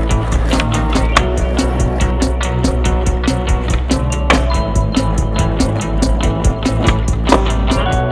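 Rock song in an instrumental break, drums and guitar on a steady beat, with skateboard sounds laid over it: wheels rolling on concrete and sharp board clacks of pops and landings, about a second in, just after four seconds, and just after seven seconds.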